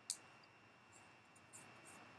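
Near silence: room tone with a faint steady hiss. It is broken by a brief rustle just after the start and a few faint rustles and ticks near the end, from tarot cards being handled.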